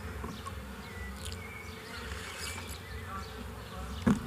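Low steady electrical buzz from a handheld wired microphone's sound system, with a few faint clicks and rustles as a plastic water bottle is handled and drunk from.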